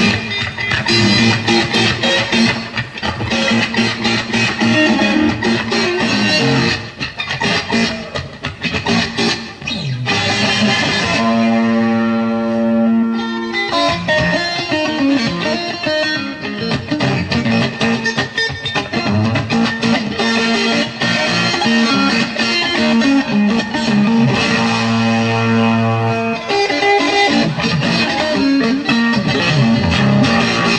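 Live blues-rock instrumental passage: a distorted electric guitar leads over bass and drums, with a note held for a couple of seconds about eleven seconds in.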